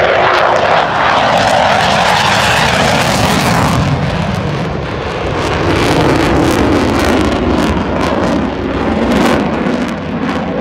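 F-15 fighter jet's twin turbofan engines, loud, as the jet flies low past and pulls up into a steep climb. The rushing jet noise falls slowly in pitch as it passes and climbs away.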